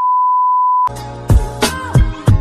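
TV colour-bar test tone: one steady, loud beep that cuts off just under a second in. It is followed by music with a beat.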